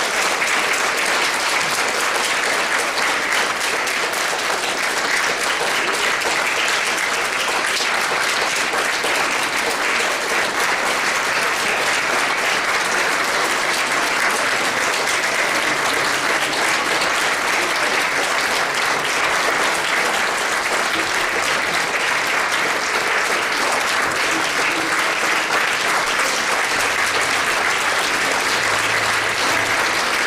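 A large congregation applauding steadily and without a break, a long run of sustained clapping.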